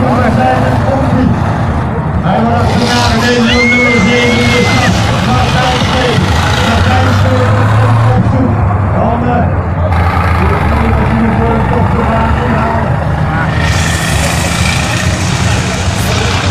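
Diesel engines of racing combine harvesters running hard on a dirt track, with the engine noise swelling near the middle as the machines pass. Over the engines, an announcer's voice can be heard through the PA.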